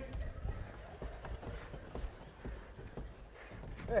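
Faint, scattered footsteps and knocks of actors moving on a wooden stage floor, over a low steady hum; a voice comes in right at the end.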